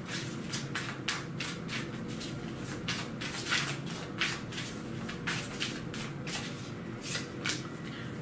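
A tarot deck being shuffled overhand, the cards clicking and sliding against each other several times a second.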